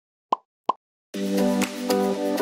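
Two short pop sound effects, about a third of a second apart, then music with a steady beat comes in a little over a second in.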